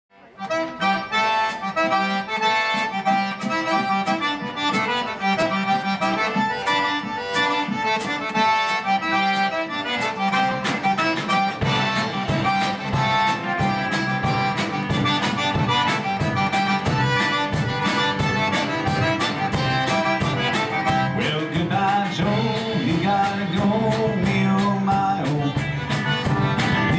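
A live Cajun-country band plays an instrumental intro led by a button accordion over a steady beat. The low end fills out about eleven or twelve seconds in.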